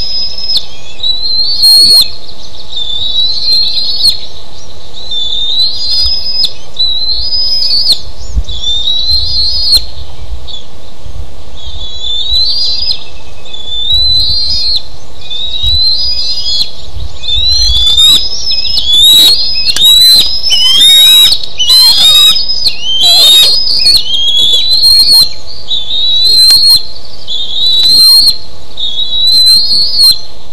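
Young bald eagles calling over and over in high, rising whistled calls, about one every second and a half. From about halfway through the calls come faster and overlap. These are the eaglets' alarm calls at an intruding eagle on the nest.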